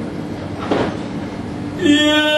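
Fado accompaniment of Portuguese guitar and viola (classical guitar) playing in a short gap between sung lines, under a haze of room noise. A man's singing voice comes back in strongly near the end.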